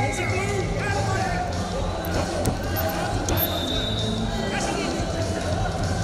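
Indoor wrestling-arena ambience during a bout: voices calling out over the general hall noise, with dull thuds and a couple of short clicks.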